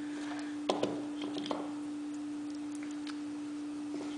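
A steady electrical hum at one pitch, with a few light clicks of small metal gear parts being handled about a second in.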